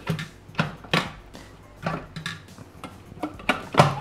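Plastic lid and measuring cup being fitted and locked onto a Bimby (Thermomix) mixing bowl: a handful of separate light clicks and knocks, the sharpest near the end.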